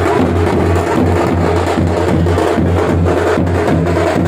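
Loud wedding dance music: a band's snare and bass drums beating a fast, steady rhythm over a continuous deep bass.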